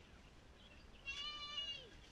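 A child's high-pitched squeal, held for just under a second starting about a second in, dipping slightly in pitch at the end.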